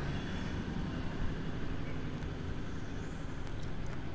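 Steady low background rumble with a faint hiss; no distinct sound stands out.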